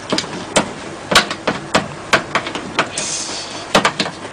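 A spoon knocking and scraping against a container in a series of irregular sharp knocks as chopped aloe vera gel is scooped into a ginger mixture, with a brief hiss about three seconds in.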